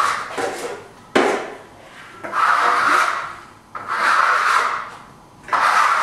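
Plastering trowel scraping iridescent metallic Venetian plaster across a wall in a run of fast sweeping strokes. Each stroke lasts about a second, with short gaps between them.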